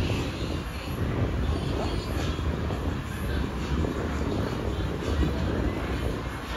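Urban street ambience: a steady low rumble of traffic and city noise, with faint distant voices.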